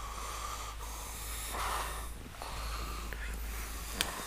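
A person snoring, slow breaths swelling and fading a couple of times, over a steady low hum.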